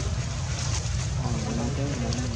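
Steady low rumble of wind buffeting the microphone, with faint distant voices about halfway through.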